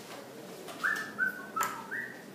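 Dry-erase marker squeaking across a whiteboard as it writes: about four short high squeaks in quick succession from just under a second in, with a sharp tap of the marker on the board among them.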